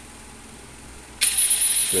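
Top Shak cordless impact wrench switched on about a second in and run free with no load: a steady high-pitched motor whine over a hiss, working perfectly.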